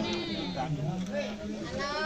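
Several people's voices talking at once in the background, without distinct words.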